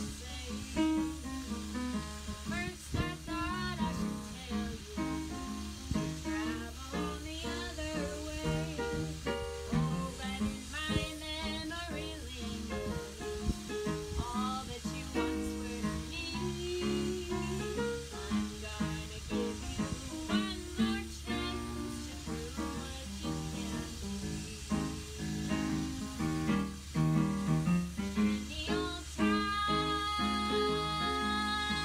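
A woman singing a jazz-and-blues song with vibrato, accompanied by a Yamaha digital piano. Near the end she holds one long note.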